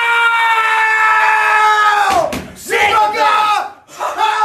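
A person screaming loudly at a high pitch: one long held scream that slides down in pitch after about two seconds, then a shorter second yell.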